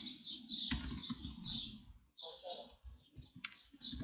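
Computer keyboard typing: a few separate keystrokes clicking at an uneven pace.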